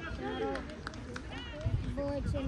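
Distant shouting voices of players and onlookers across an outdoor football pitch, with a few short knocks about a second in.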